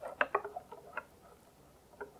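Wire whisk stirring a thick cream mixture in a glass bowl: a quick cluster of clicks and taps of the wires against the glass in the first second, then a single faint tap at the end.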